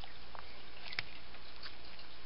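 Faint light ticks, the clearest about a second in, as steel scissors are worked down among Venus flytrap leaves in a plastic pot, over a steady low background hiss.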